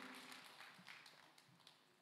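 Near silence: the last of the music dies away in the first half second, leaving faint room tone with a few soft taps.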